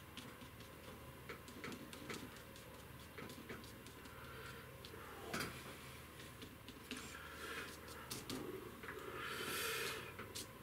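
Flat paintbrush dabbing and dragging oil paint across a painting surface: faint, irregular little ticks, with a longer scratchy stroke near the end.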